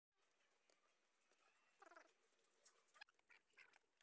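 Near silence: faint room tone with a brief faint squeak about two seconds in and a few faint clicks.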